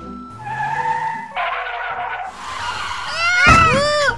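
Cartoon sound effects of a sports car racing in and screeching its tyres to a stop, over background music. Near the end comes a loud run of swooping sounds.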